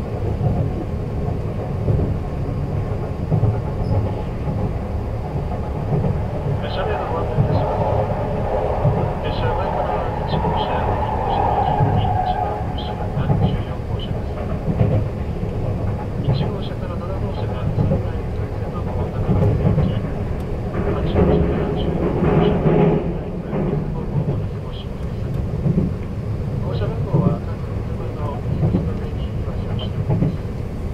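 Running noise of a 285 series sleeper train heard inside a sleeper compartment: a steady low rumble from the moving train. A faint voice comes through over it in places, around a third of the way in and again past the middle.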